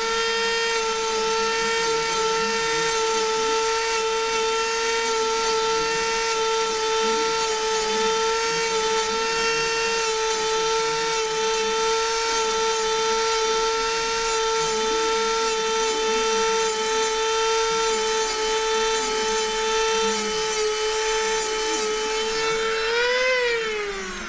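Small Dremel-type rotary tool with a grinding wheel, running with a steady high-pitched whine while it lightly grinds the backs of band saw blade teeth to freshen their sharpness. Near the end its pitch rises briefly, then winds down.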